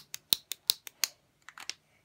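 Repeated sharp clicking of a makeup product's click mechanism, worked over and over by hand: a quick run of about six clicks a second, a short pause, then a few more clicks.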